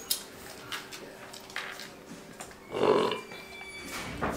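A person burping once, loudly, about three seconds in, over a few light clicks and knocks.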